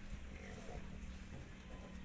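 Faint sounds of a flock of sheep in a pen, over a steady low rumble.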